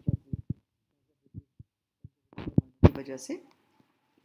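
Several short, low thumps, the loudest a little under three seconds in, with brief fragments of a voice between them near the end.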